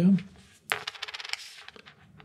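Small game tokens clattering together in a quick rattle of many light clicks, lasting under a second, beginning near the middle.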